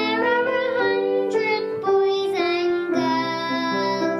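A young girl singing a melody with piano accompaniment, holding each note briefly and moving from pitch to pitch.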